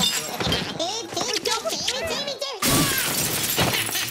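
Household things smashing and glass shattering as a room is wrecked, with shouting voices; a sudden loud crash comes about two-thirds of the way in.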